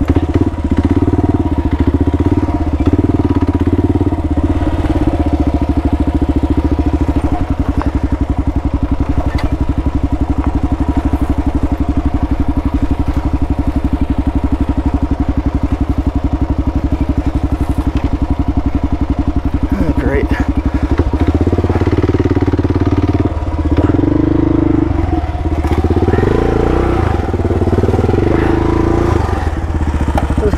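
Kawasaki KLR650's 650 cc single-cylinder engine running at low speed on a dirt single-track trail, with a steady, rapid beat of firing pulses. It revs harder in several surges during the last third.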